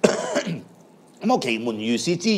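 A man talking in short phrases, opening with a harsh throat-clearing sound, then a pause before he speaks on.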